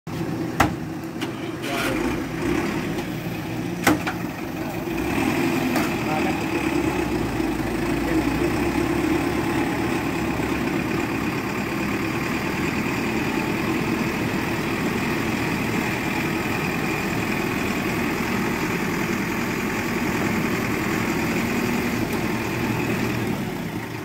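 Diesel engine of a JCB backhoe loader running steadily under load as it hauls a school bus through mud, with two sharp knocks in the first few seconds.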